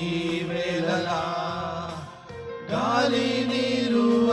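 Men's voices singing a Telugu Christian worship song together, with long held notes over steady low tones. A short pause comes about two seconds in before the next line begins.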